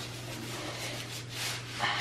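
Bubble wrap rustling and crinkling as it is pulled off a wooden glove mallet, over a low steady hum.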